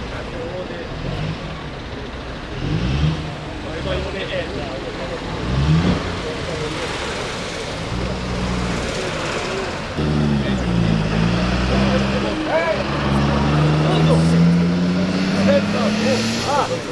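A motor vehicle engine running, revving briefly twice in the first six seconds, then running steadily, dipping in pitch and rising slowly toward the end, with people talking in the background.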